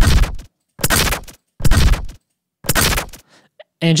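Designed bassy glitch sound effect played back as four short, hard hits a little under a second apart. It is heard through an EQ curve simulating an uncorrected studio room, which makes it sound bright and nasal with barely any bass.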